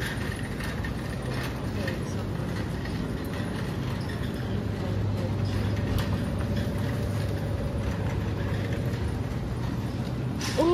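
Metal shopping cart rolling and rattling steadily over a smooth concrete floor, over a constant low hum.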